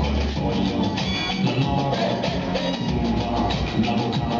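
Live band playing amplified music with a steady drum beat and bass, heard from among the audience.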